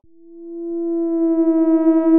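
A single steady electronic tone, one held note with overtones, swelling in over about the first second after the location sound cuts off abruptly.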